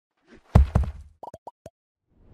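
Logo-animation sound effect: two low thumps about half a second in, then four quick pops, each dropping a little in pitch.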